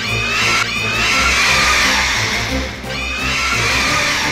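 A kaiju monster's shrieking cry sound effect for Melba, repeated as long calls of about two seconds each, over background music with a low beat.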